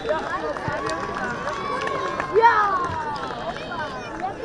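Football spectators shouting "ja!" in celebration, several voices overlapping, with a long drawn-out shout about two and a half seconds in.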